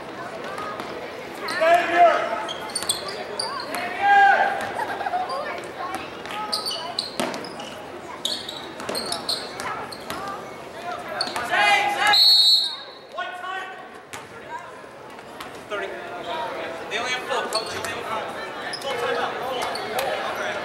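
A basketball being dribbled on a hardwood gym floor, with repeated knocks echoing in a large gym, while players and spectators shout. A short, high referee's whistle sounds about twelve seconds in.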